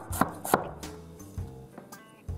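Kitchen knife chopping garlic on a wooden cutting board: two sharp chops in the first half second, then fainter taps.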